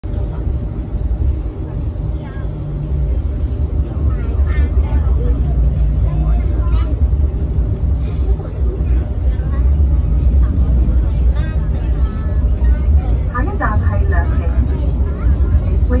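MTR Light Rail car running along the track, a steady low rumble inside the cabin, with voices over it. A recorded next-stop announcement in Cantonese begins near the end.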